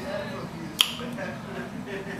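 A single sharp click a little under a second in, over quiet talk.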